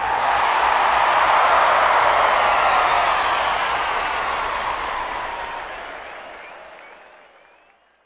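Crowd applause that starts suddenly at full level and fades out gradually over about eight seconds.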